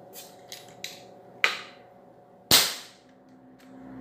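Handling noise from a pump air rifle: a few light clicks, a sharp knock about a second and a half in, then a louder knock about two and a half seconds in that rings out briefly.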